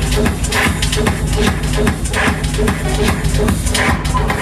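Loud techno-style electronic dance music from a DJ set, played through a nightclub's sound system, with a steady repeating beat and heavy bass.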